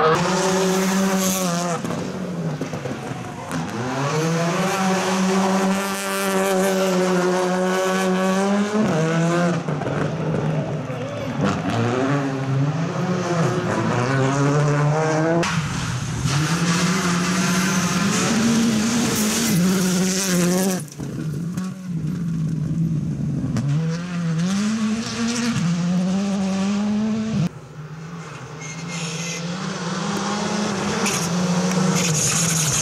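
Rally cars' engines revving hard through the gears on gravel stages, the pitch climbing and falling back with each gear change, over the hiss of tyres on loose gravel. The sound changes abruptly several times as one car's pass gives way to another.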